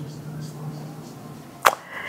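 A pause with a faint steady low hum, then one sharp click about one and a half seconds in.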